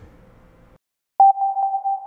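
An edited-in transition sound effect: a single steady mid-pitched electronic tone that starts sharply a little over a second in, right after a moment of dead silence, and is held on.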